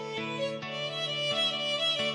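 Background instrumental music: a melody of held notes over a steady low drone, with a new note about every half second.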